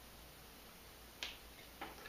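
Rubber band snapping as it is pulled until it breaks: one sharp snap a little over a second in, then a fainter click, against near silence.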